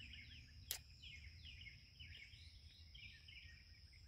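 Near silence: faint outdoor ambience of small birds chirping in quick falling notes over a steady thin high whine, with a single sharp click under a second in.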